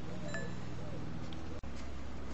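Steady low background hum with one faint, short metallic clink about a third of a second in: the scrench's screwdriver tip against the steel of the chainsaw's chain-tension screw.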